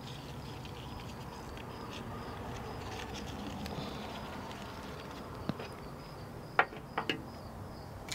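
Faint, steady buzzing of insects in a summer flower garden, with a repeating high chirp in the background. A few light clicks come in the last few seconds as flower stems are handled in a glass vase.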